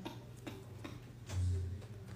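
Light, rhythmic pats of a hand on a newborn's back, a couple of times a second, with one low thud about a second and a half in.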